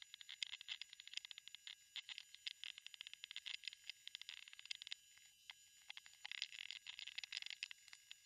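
A fast, faint run of computer mouse and keyboard clicks, sped up along with the screen recording, with a short lull about five seconds in.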